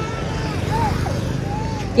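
Busy street ambience: a steady low rumble of motor traffic with faint voices of passers-by.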